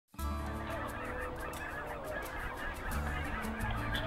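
A large flock of geese honking, many calls overlapping in a continuous chorus, over a low steady hum.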